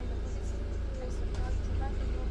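Interior noise of an articulated city bus: a steady low rumble of the bus running, heard from inside the passenger cabin.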